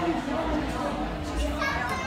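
Background chatter of a roomful of guests, with children's voices and play among the adults' talk.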